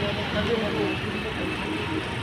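Steady road traffic noise with people talking indistinctly over it.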